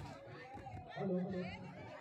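Background chatter of a crowd of people talking, with one voice a little clearer about a second in.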